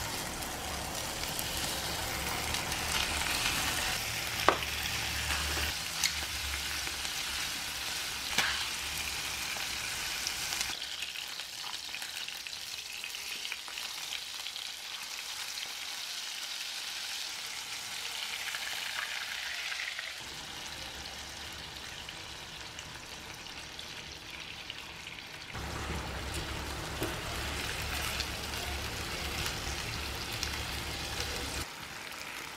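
Food sizzling as it fries in a pan while being stirred, with a few sharp clicks in the first ten seconds; the sizzle is quieter through the middle stretch.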